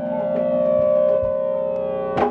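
Electric guitar holding one long, steady ringing note that swells slightly about a second in, as the song winds down.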